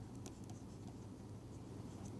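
Faint scratching and light taps of a stylus writing on a pen tablet, over a low steady hum.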